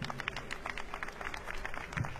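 Light audience applause: many distinct, scattered hand claps.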